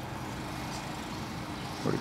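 Steady outdoor background noise, a low hum and hiss with a faint steady tone, with no distinct events; a man's voice starts just before the end.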